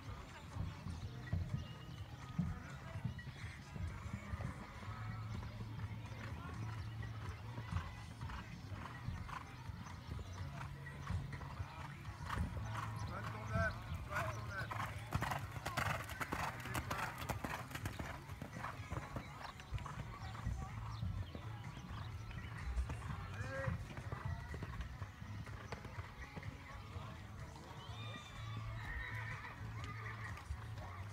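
A horse's hooves cantering on a sand arena, a rolling beat of dull thuds that grows loudest about halfway through as the horse passes close by, then fades as it moves away.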